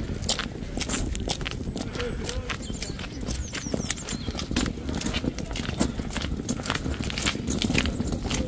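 Footsteps of people walking on brick paving: a steady run of sharp steps, several a second, over a low steady rumble.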